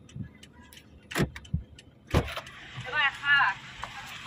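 Two sharp clunks about a second apart, from a car door being handled, followed by a brief voice.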